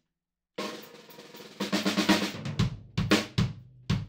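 Acoustic drum kit being played: after a short silence a roll starts about half a second in, followed by a string of separate hits across the kit at about three a second.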